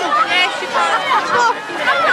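Many high-pitched children's voices shouting and calling out over one another.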